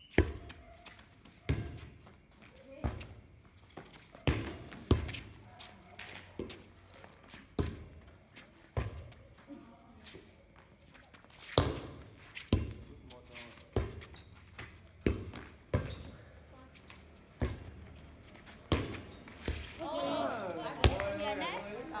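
A light inflatable air volleyball being struck by hand during a rally: sharp slaps about every second or so. Players' voices shout near the end.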